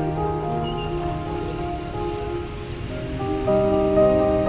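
Background music of slow, sustained chords, growing louder near the end.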